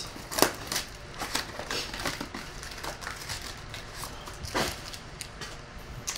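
Hands handling a stack of trading cards on a table: light, irregular clicks and rustles of card edges and sleeves, with a few sharper taps.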